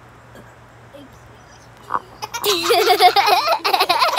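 Children laughing loudly, starting about halfway through after a quiet first couple of seconds.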